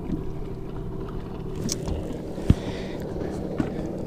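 Steady low hum of a boat's electric bow-mount trolling motor holding the boat in place, with a few light clicks and one sharp knock about two and a half seconds in.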